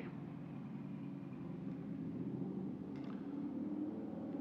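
A steady low mechanical hum, one of its tones edging slightly higher in the second half, with a faint click about three seconds in.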